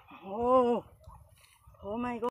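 A man's drawn-out exclamation, like an amazed 'oh' or 'wow', about half a second in, with a second, shorter one starting near the end.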